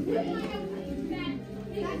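Young children's voices talking and calling out, with music playing in the background.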